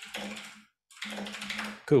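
Computer keyboard typing in quick runs of keystrokes, with a brief pause just under a second in; a voice starts right at the end.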